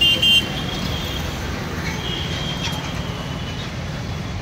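Steady road-traffic rumble, with two quick high-pitched horn toots right at the start and a fainter, longer horn tone about two seconds in.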